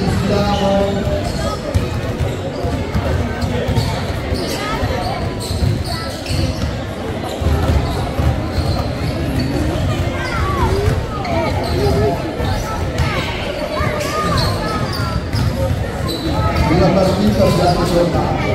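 Several basketballs being dribbled on a sports-hall floor, many irregular overlapping bounces, with players' voices calling in the background.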